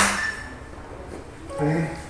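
A man's voice calling out dance counts, with a short call near the end and a single sharp snap at the very start.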